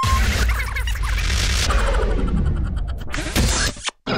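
Production-company logo sting: a short beep, then a loud stretch of sound effects and music that breaks off just before the end.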